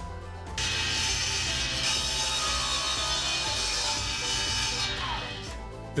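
A table saw cutting through a pine board: a steady running noise that starts suddenly about half a second in. Near the end the pitch falls as the saw winds down, with background music underneath throughout.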